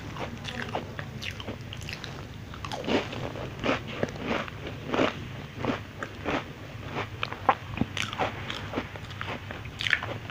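Close-up crunching and chewing of a thin, flat, crispy cookie bitten and chewed with the mouth near the microphone: a run of irregular sharp crunches about every half second, loudest near the end.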